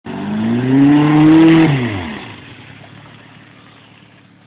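Chevrolet Chevette's engine revving up, its pitch climbing steadily for about a second and a half, then dropping and fading away as the throttle comes off.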